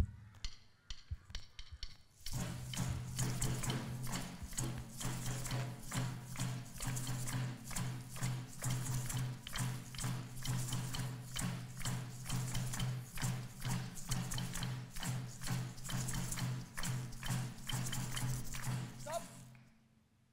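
Drum circle: a few sharp stick taps set the beat, then about two seconds in a large group joins, keeping a steady rhythm with their hands over a low steady hum. The rhythm stops abruptly shortly before the end.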